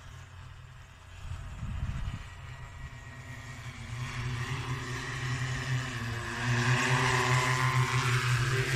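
Joyance JT10L-606QC agricultural spray drone's electric rotors humming steadily. The hum grows much louder over the last few seconds as the drone flies in close and comes down low. A brief low rumble comes about two seconds in.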